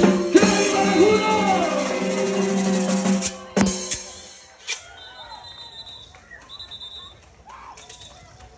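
Kichwa band playing live on keyboard and drum, ending with a final hit about three and a half seconds in. It is followed by faint crowd voices.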